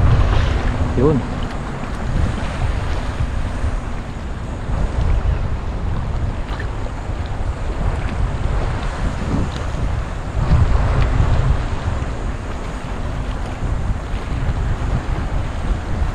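Wind buffeting the camera microphone in uneven gusts, with small waves lapping in shallow seawater around a wading angler.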